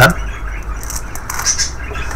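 Foil and plastic ration packets rustling and crinkling as a hand moves them and sets them down on a wooden table, over a low steady hum.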